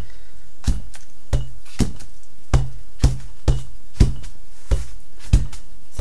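Black ink pad being dabbed repeatedly onto a padded car sunshade: about a dozen soft, uneven taps and thuds, roughly two a second.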